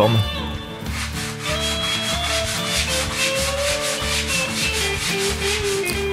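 Hand sanding of a padauk guitar headstock and volute with sandpaper glued to a flexible strip of veneer, in steady back-and-forth rasping strokes about twice a second.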